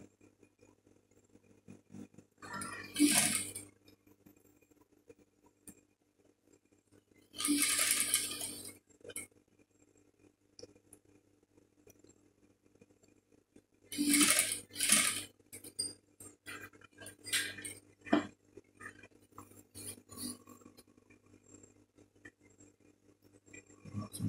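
Industrial sewing machine stitching a patch pocket's edge onto fabric in three short runs, each about a second long, stopping between runs while the curve is turned. A low steady hum continues between runs, with light scattered clicks late on.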